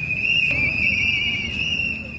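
A steady high-pitched whistle-like tone that wavers slightly, over a low murmur of crowd noise.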